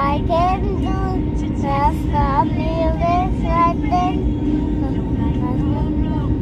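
A young girl singing short melodic phrases, clearest in the first four seconds and fainter after, over the steady low drone of an airliner cabin.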